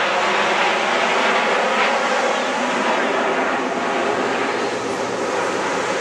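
Jet engine noise from the Red Arrows' formation of nine BAE Hawk T1 jets passing overhead: a steady rushing sound that eases slightly in the second half as they draw away.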